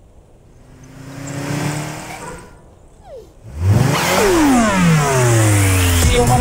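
Cartoon car engine sound effect: an engine grows louder and fades over the first couple of seconds. Then, about three and a half seconds in, a much louder engine comes in and sweeps past, its pitch falling steadily, as a speeding car passing by.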